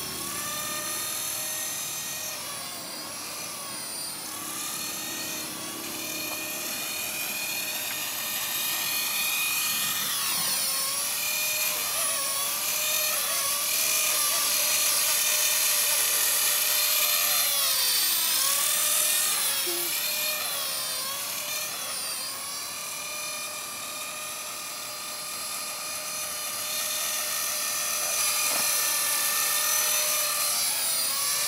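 Electric Blade SR radio-controlled helicopter in flight, its motor and rotor giving a steady high whine. The pitch dips and recovers several times, most clearly about ten seconds in and again near twenty seconds. The whine grows louder and quieter as the helicopter moves closer and farther away.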